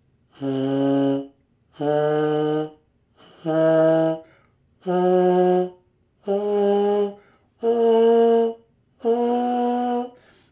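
Trombone mouthpiece buzzed on its own, playing a rising scale of seven separate notes, each held about a second with short gaps between. Every note is an air start: begun with breath and embouchure alone, without the tongue.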